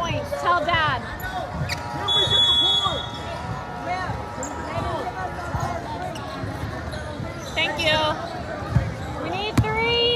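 Basketball gym sounds: sneakers squeaking on the hardwood court, a basketball bouncing a few times, and voices of players and spectators around the court. A steady tone sounds for a second or two near the start.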